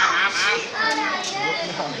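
Children's voices, several at once, talking and calling out in a lively babble.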